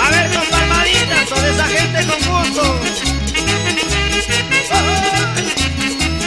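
Ecuadorian sanjuanito dance music from a 1986 vinyl recording, instrumental here. A steady pulsing bass beat runs under a melody with sliding notes.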